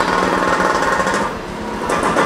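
Continuous fast mechanical rattle from a machine running in the background, dipping a little in level for a moment past the middle.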